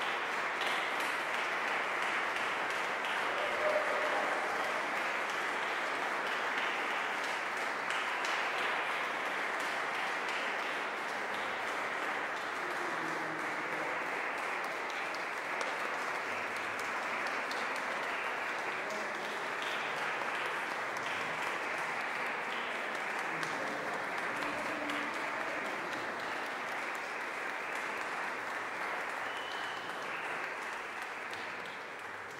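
Audience applause, a dense steady clapping that eases slightly near the end.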